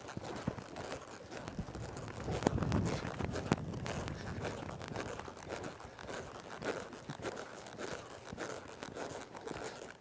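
Hoofbeats of a horse loping through soft, deep arena dirt: irregular muffled thuds and crunches, mixed with close rustling, a little louder about two to three seconds in.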